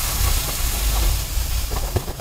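Loose black sand pouring off a sheet of sand-art paper: a steady hiss over a low rumble, with a few light taps near the end.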